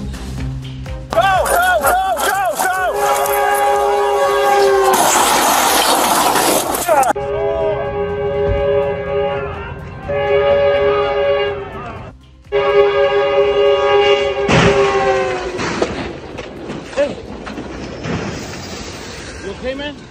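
A train's air horn blaring a chord of several steady tones in long blasts, with a loud crash about five seconds in as the train strikes a small plane on the tracks.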